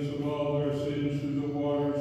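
A man's voice chanting liturgical text on a near-steady recitation pitch, in long level phrases with brief breaks between them.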